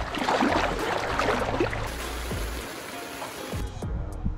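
Water splashing and sloshing close up as a springer spaniel paddles through it, strongest in the first two seconds and ending just before the close. Background music runs underneath.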